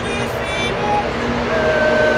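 A woman singing from a text sheet, with short held notes and, near the end, one long note that wavers with vibrato. Steady road-traffic noise runs underneath.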